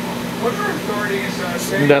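A man's voice, quiet and indistinct, over a steady low hum; his speech grows louder at the very end.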